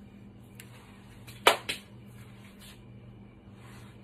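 A sharp knock about a second and a half in, followed a moment later by a smaller one, over a steady low hum.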